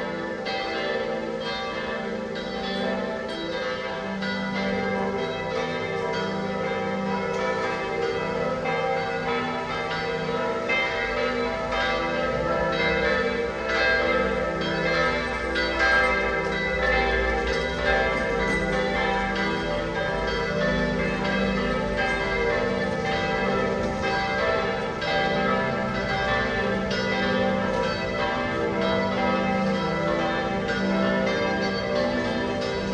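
Several church bells of different pitches ringing together, struck over and over so that their tones overlap in a continuous peal, from the bell tower of Florence Cathedral (Giotto's Campanile).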